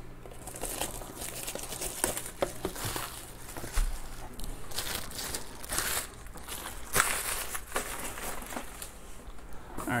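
Hands handling small cardboard trading-card boxes, with crinkling of wrapping and scattered light knocks and scrapes as the boxes are shifted and restacked.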